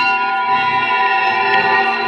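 Electric guitars played through effects pedals, holding a loud, dense chord of steady bell-like ringing tones with no new attack.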